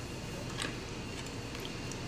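Quiet room tone with a couple of faint clicks and light scraping from a serving spoon scooping syrupy peach filling out of a stainless steel pot.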